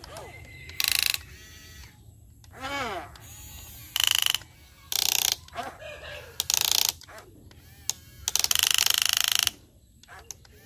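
Huina radio-controlled toy excavator's small electric gear motors whirring in short bursts as the boom and bucket move, about five times, the last burst the longest, with a ratcheting gear sound.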